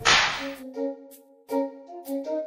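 A sharp swish sound effect that fades within about half a second, then soundtrack music of single keyboard notes starting up.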